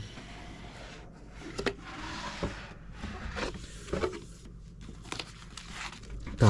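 A cardboard box being opened by hand: the lid rubbing and scraping as it slides off, with a few light knocks, and paper leaflets handled near the end.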